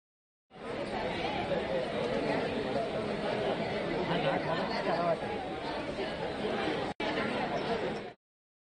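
Seated audience chattering, a babble of many overlapping voices with no one voice standing out. It starts suddenly about half a second in, drops out for an instant near the end and cuts off sharply.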